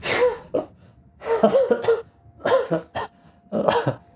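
A man laughing in four short bursts.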